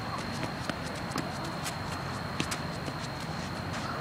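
Tennis ball struck by rackets and bouncing on a hard court during a rally: a series of sharp pops at uneven spacing, the loudest about two and a half seconds in, with running footsteps on the court.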